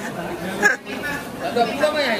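Voices of several people chattering.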